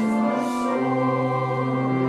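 Congregation singing a hymn with instrumental accompaniment; long held chords change to new notes about a second in.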